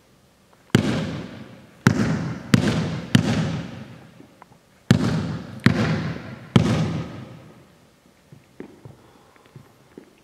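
A basketball bounced on a hardwood gym floor, seven sharp bounces in uneven groups over the first seven seconds, each echoing for about a second around the hall, then a few faint taps.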